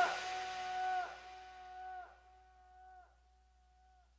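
The song's final held note fading out over about two seconds, with a slight waver in pitch about once a second, then near silence.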